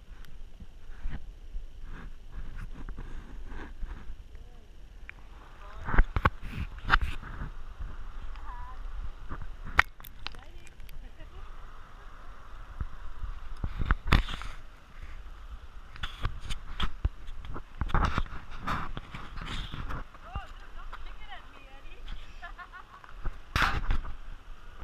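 Repeated knocks and rubbing from a handheld GoPro action camera being moved about, over a steady rush of water, with brief indistinct voices.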